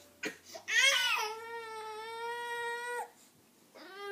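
A baby lets out one long, high-pitched cry that rises at first, holds steady for about two seconds and cuts off suddenly; a couple of short knocks come just before it, and a second cry starts near the end.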